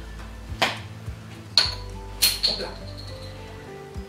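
Several sharp knocks and clinks of kitchen items being handled and set on a worktop, two of them with a short high ring, over steady background music.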